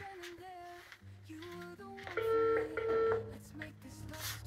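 Soft background music, cut across about two seconds in by a mobile phone's call tone: two loud, steady beeps in quick succession.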